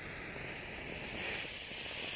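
Butane torch lighter hissing at a firework fuse, then the lit fuse fizzing. It is a steady hiss that gets brighter about a second in.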